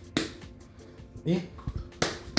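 Hands kneading a ball of soft biscuit dough, with a few short, sharp slaps of the dough against the palms.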